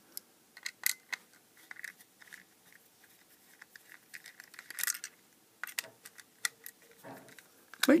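Small precision screwdriver tip clicking and tapping against the components and circuit board of an LED strobe beacon, in scattered light ticks, with a short rustle about five seconds in.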